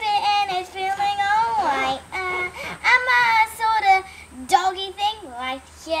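A child singing without accompaniment, holding long notes that slide up and down, in a few phrases with short breaks between them.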